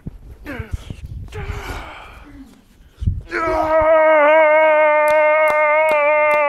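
A man's voice in short strained sounds, then a low thump about three seconds in, followed by a long, loud yell held at one steady pitch for about three seconds.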